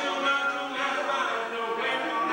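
Small group of men singing a cappella in close barbershop harmony, several voices holding and sliding between chords.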